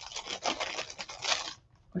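Rummaging through small makeup containers: a run of rustling and light clattering that stops about a second and a half in.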